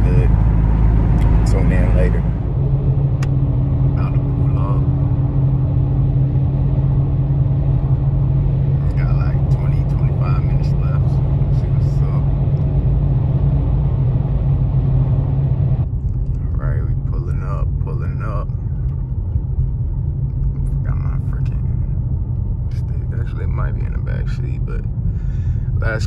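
Car cabin sound while driving at speed: a steady low engine and road drone with a steady hum, which changes abruptly about two-thirds of the way through. Faint voices come and go over it.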